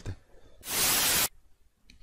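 A short burst of even hiss, about two-thirds of a second long, starting about half a second in and cutting off abruptly, followed by near silence.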